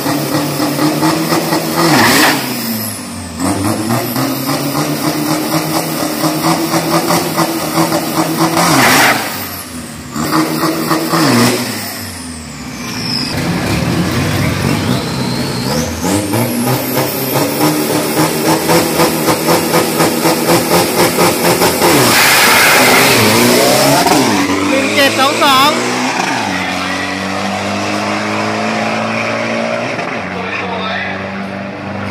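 Nissan Navara drag-racing pickup's engine revving in several short bursts, then held high with a rapid even pulsing. About 22 s in it launches with a loud burst of noise, and its pitch falls through the gears as it pulls away down the strip. A lower, steadier engine sound follows near the end.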